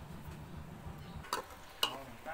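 A low rumble, then two sharp knocks of a metal ladle against an aluminium cooking pot, about half a second apart, in the second half.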